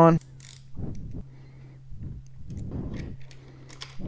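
Metal handlebar control clamps and their bolts being fitted and turned by hand on a motorcycle handlebar: a few short scrapes and light clicks over a steady low hum.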